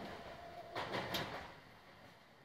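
Faint running noise inside a train carriage as the train approaches its terminal stop, with a brief louder rattle about a second in. It fades out near the end.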